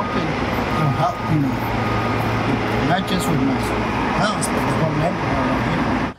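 A man talking outdoors, his voice partly buried under loud, steady background noise that lasts the whole time.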